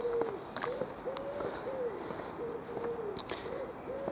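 A pigeon cooing: a repeated run of soft, low coos, short notes alternating with longer drawn-out ones, over faint outdoor background hiss.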